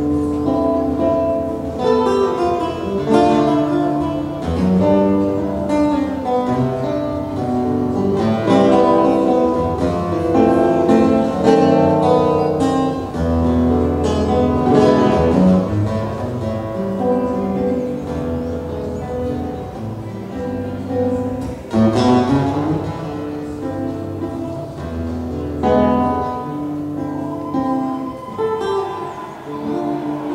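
Solo nylon-string classical guitar playing a fingerpicked instrumental piece, a continuous run of changing plucked notes and chords, with one sharply struck chord about two-thirds of the way through.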